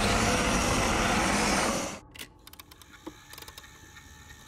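A loud, steady rush of noise, a trailer sound-effect swell, that cuts off suddenly about two seconds in. It is followed by quiet with faint scattered clicks.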